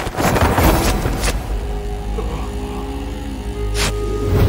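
Action-film fight soundtrack: a dramatic background score over a deep rumble, punctuated by sharp impact hits at the start, about a second in, and just before the end. Held notes of the score come in after the second hit.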